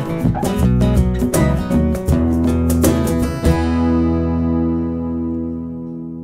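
The closing bars of a folk song on strummed acoustic guitar, ending about three and a half seconds in on a last chord that is left to ring and slowly fade.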